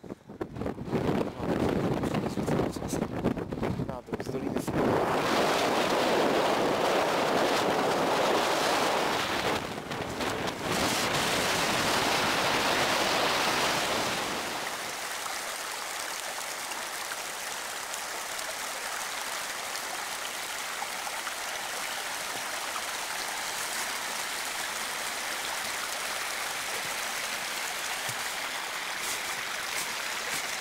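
Gusty wind buffeting the microphone for about the first fourteen seconds, then a steady, even rushing of a mountain stream running high with snowmelt.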